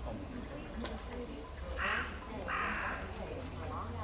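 Two harsh, raspy bird calls close together in the middle, over a low murmur of people talking.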